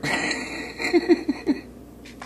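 A man chuckling: a short run of quick, breathy laughs that dies away after about a second and a half.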